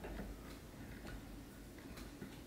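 Faint, irregular ticks and light handling noise as fingers wrap chenille around a hook clamped in a fly-tying vise.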